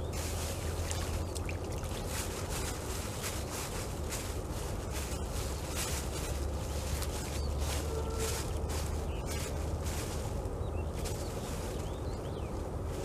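Plastic bag crinkling and rustling in a steady run of small crackles as dry groundbait is wetted with lake water and kneaded by hand, over a low steady rumble.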